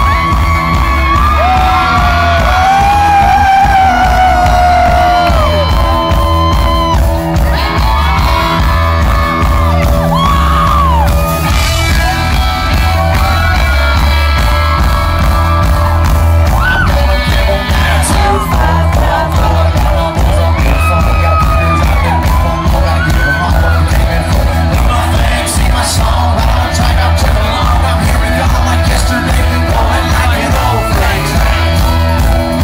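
A live country band playing loud amplified music with a heavy, steady bass, with whoops and shouts from a crowd over it.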